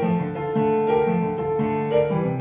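Electronic keyboard played with a piano voice: a Colombian bambuco melody over chords and a moving bass line.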